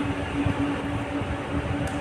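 A steady low hum over a background haze, with faint rustling and a few soft knocks from hands wrapping insulating tape around a wire joint.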